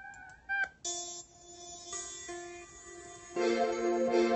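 Software-instrument melody playing back in FL Studio: a brief note, then a few quiet held notes that step in pitch, and a fuller, louder chord coming in about three and a half seconds in.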